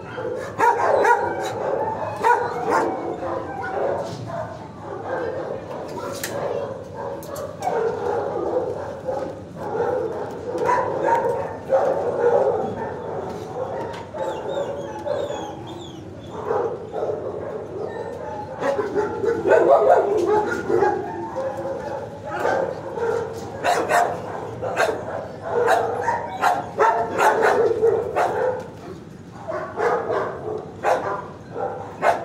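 Dogs in a shelter kennel block barking again and again, sharp barks coming throughout over a steady background of more barking and yipping.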